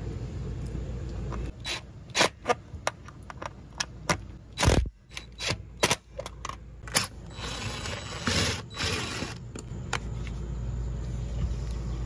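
Clicks and knocks of a cordless drill and screws being handled against a metal screen-door frame, followed about eight seconds in by a scraping stretch of about two seconds as a screw is driven into the frame.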